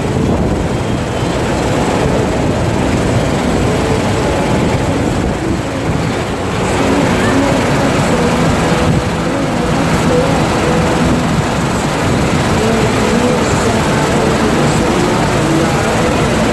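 Steady, loud rush of water pumped up the slope of a FlowRider surf simulator, as a bodyboarder rides on it. It gets a little louder about six and a half seconds in.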